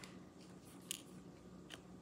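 Faint clicks of a diamond-painting drill pen setting drills onto the canvas: two small ticks, a little under a second apart, over quiet room tone.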